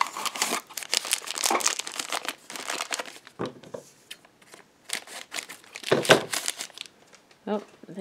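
Packaging crinkling and tearing as a small cardboard blind box is opened and a mini vinyl figure is unwrapped by hand. The handling comes in busy bursts, dropping off briefly about halfway through.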